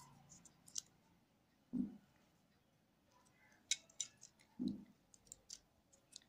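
A small knife scoring the tough rind of a pomegranate, heard as a series of short, sharp crackling clicks, with a few dull thuds of the fruit being handled.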